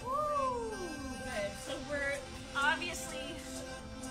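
Background music with steady held tones and voice-like sounds; at the start a long wail rises briefly and then falls away over about a second.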